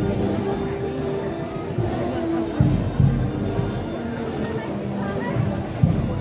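Band music with long held notes, broken by a few heavy low thumps, the loudest about two and a half, three and six seconds in, with people talking nearby.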